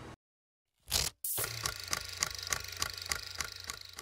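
A whoosh about a second in, then a channel outro sting: a quick, even ticking beat, about three ticks a second, over a low steady hum.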